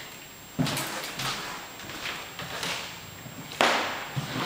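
Footsteps on a bare hardwood floor in an empty room, with two louder sharp strikes, about half a second in and near the end, and lighter steps between them.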